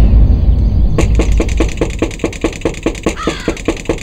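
A deep boom dies away in the first second, then crows caw in a quick run of short harsh calls, about four a second.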